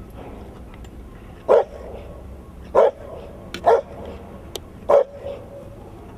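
A large black dog barking four times, about a second apart.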